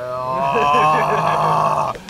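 A man's long, loud groan of stress, rising in pitch at first and then held, cutting off just before the end.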